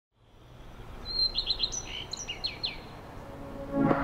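A small bird chirping a quick run of short, high, falling notes, over faint steady background noise; music swells in near the end.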